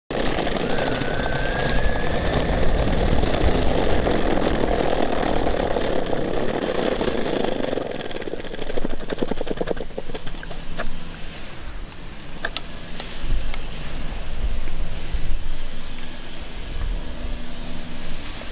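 Electric skateboard rolling fast over brick paving: a loud rolling rumble of the wheels on the bricks, with a short rising whine about a second in. After about eight seconds it turns quieter, with a run of rapid clicks.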